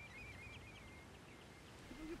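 A bird calling faintly in a quick series of short chirps, about five a second, that trail off into thin steady whistles. A low outdoor rumble runs beneath.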